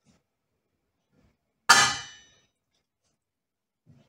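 A single metallic clang of cookware, ringing briefly and dying away within about half a second.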